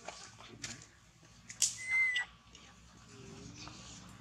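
A short, high, whistle-like animal call about two seconds in, held at one pitch for about half a second, among light clicks and rustles.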